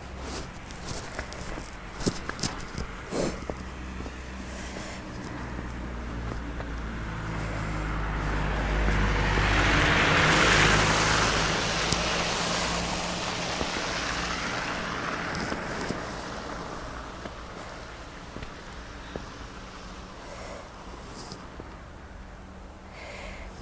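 A van driving past on a wet, slushy road: its engine and tyre hiss grow louder to a peak about ten seconds in, then fade slowly away.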